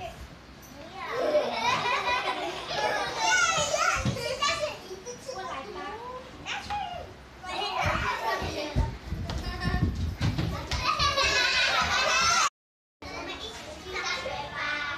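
Young children talking and calling out over one another, high voices overlapping, with a few low thumps among them. The sound drops out completely for about half a second near the end.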